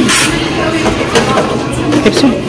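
A capsule toy machine's crank dial being turned by hand, giving a few short clicks. Behind it is the steady chatter and noise of a busy arcade.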